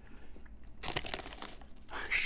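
Faint crinkling of a foil chip bag and crackling of potato chips being handled, a scatter of short crackles that come more often in the second half.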